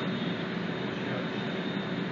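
Steady running noise of a passenger train carriage, heard from a seat inside, with a faint steady hum.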